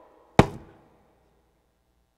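A single sharp knock about half a second in, dying away quickly.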